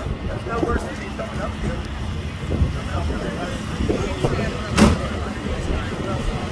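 Low, steady vehicle engine rumble under indistinct chatter from people nearby, with one brief sharp knock about five seconds in.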